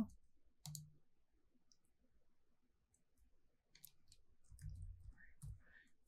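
Near silence with a few faint computer mouse clicks, spread out, as points are picked on screen.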